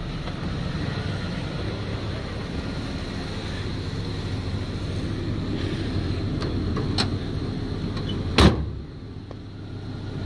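Ford Ranger's tailgate slamming shut once, a single sharp bang about eight seconds in, after a steady low rumble.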